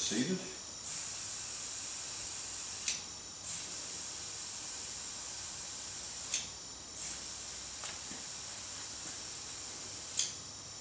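Compressed air hissing through an air chuck into the inner tube of a newly mounted motorcycle tire as it is inflated. The steady hiss breaks off briefly about three times, each break starting with a click.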